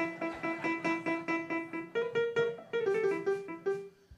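Piano playing a short phrase: a run of repeated notes on one pitch, then a higher figure that steps down, cutting off abruptly at the end.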